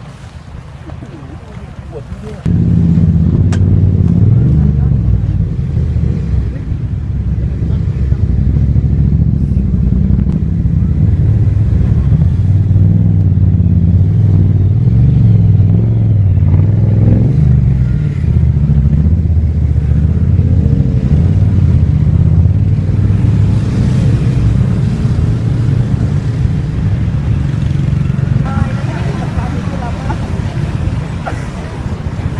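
Loud, steady low rumble of wind buffeting the microphone, starting abruptly a couple of seconds in. Faint voices can be heard underneath.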